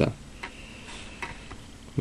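Quiet room tone with a couple of faint, sharp clicks.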